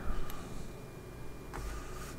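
Low room noise with a faint hum and two faint clicks about a second apart, from a computer mouse being clicked.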